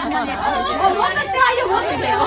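Several people talking over one another: chatter.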